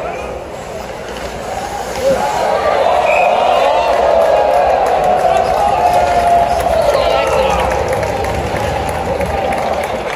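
Ice hockey arena crowd: many spectators' voices at once, swelling louder about two seconds in and easing off near the end.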